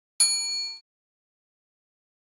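Notification-bell sound effect: a single bright metallic ding, about half a second long, ringing several high tones at once before cutting off.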